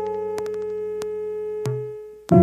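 Background synthesizer music: one long held keyboard note slowly fading, with a brief lower note near the end.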